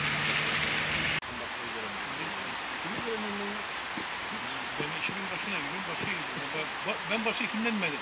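Steady outdoor hiss with a low hum that cuts off abruptly about a second in. After that, faint, indistinct voices of people talking over a quieter hiss, the talk growing busier toward the end.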